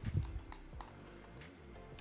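A few computer keyboard keystrokes near the start, over soft background music.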